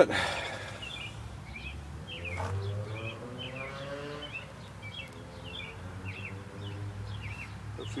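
Small birds chirping in the background: short, high chirps repeated irregularly, several a second, over a faint steady low hum.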